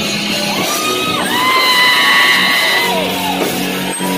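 Live metal band music with a folk flavour, recorded at a concert, over which a singer's long high yell slides up, holds and falls away.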